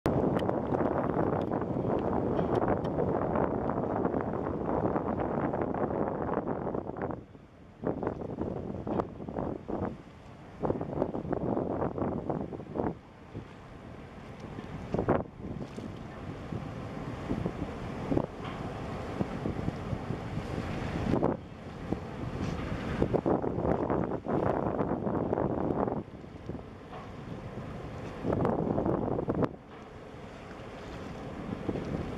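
Wind buffeting the microphone in uneven gusts, with several brief lulls.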